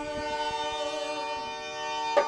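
Harmonium holding a steady chord, its reeds sounding several notes at once without change in pitch.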